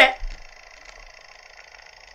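A short vocal exclamation cut off at the very start, then a faint steady electronic hum with a thin high whine.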